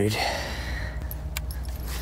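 Fishing rod and reel being handled: a brief rustle, then a few light clicks about a second in.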